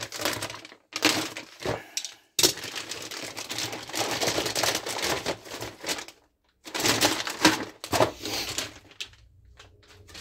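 Crinkling and rustling of a clear plastic bag as it is pulled open and a clear plastic blister tray of model parts is worked out of it. It comes in bursts, stops briefly around the middle, and dies down near the end.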